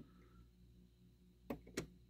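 Near silence with a faint steady hum. About a second and a half in come two light clicks, a die-cast toy car being set down on a glass shelf.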